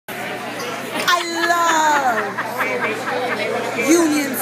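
People talking, with the chatter of a crowded dining room behind.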